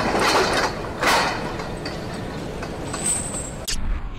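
Industrial sound design for an animated logo: a steady mechanical rumble with two whooshing noise swells in the first second or so, then a sharp metallic-sounding hit near the end as the spinning gear logo settles.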